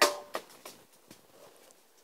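A mobile phone dropped: one sharp clatter as it hits, then two smaller taps as it bounces, dying away within the first second.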